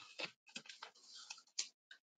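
Faint, irregular clicks and rustling handling noise, several sharp ticks among them, coming over a video-call microphone.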